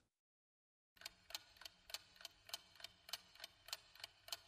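Ticking-clock sound effect of a quiz countdown timer: a faint, quick, even ticking that starts about a second in.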